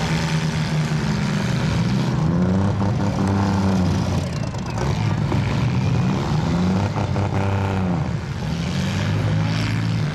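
Compact demolition-derby car engines revving hard, their pitch rising and falling again and again as the cars push and manoeuvre.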